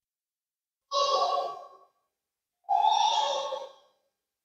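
Two long breaths close to a microphone, each starting suddenly and fading away over about a second, the second coming about a second after the first.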